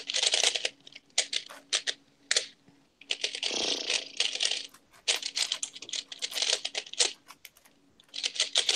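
Moyu 15x15 puzzle cube being turned by hand: quick runs of plastic clicking and clacking as its layers are twisted, broken by short pauses.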